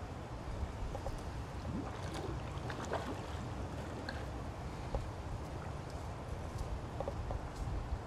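Swimming-pool water lapping and splashing lightly as swimmers move through it, over a steady low rumble.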